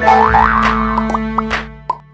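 Short cartoon-style logo jingle: bright music with a couple of quick rising pitch glides, then a run of short pops, fading out near the end.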